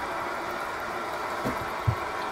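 Servis Quartz washing machine taking in water for its first rinse: a steady hiss of water filling, with two short low thumps near the end.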